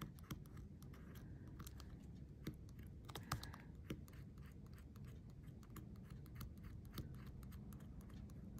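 Faint scratching and tapping of a pointed stylus drawing into metal tape on a tag: quick, irregular clicks with a few short scraping strokes.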